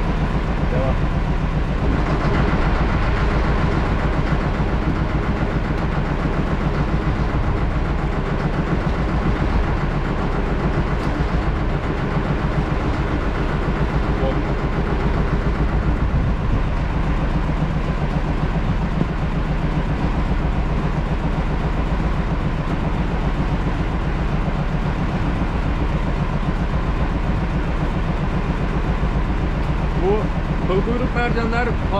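Small fishing boat's engine running steadily at low speed, a constant low rumble.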